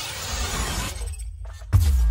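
Electronic intro logo sting: a dense, noisy sound-effect texture over music cuts out briefly, then a sudden deep bass hit near the end, with a falling boom that rings on.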